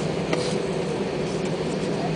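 Steady cabin noise of an Airbus A320 on the ground with its engines running: an even rush and low hum, with a single short click about a third of a second in.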